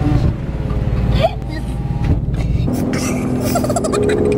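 People laughing inside a car cabin over the low rumble of the car's idling engine; the rumble thins out about two-thirds of the way in.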